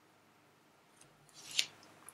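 Near silence, then about one and a half seconds in a single brief, crisp rustle of paper and pen as the writing hand lifts off the sheet.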